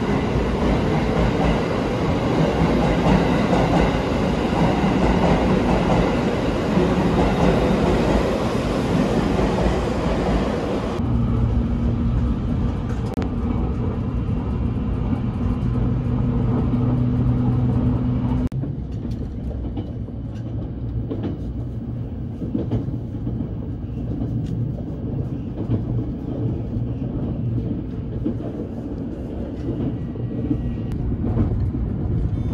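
A JR Kyushu limited-express train at a station platform, with loud, dense running noise. It cuts to a steady low hum inside the train's cabin, then to quieter running noise inside the moving train with scattered clicks from the rails.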